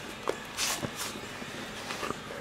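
Handling noise as a handheld camera is moved: a few soft knocks and a brief rustle over a low steady room background.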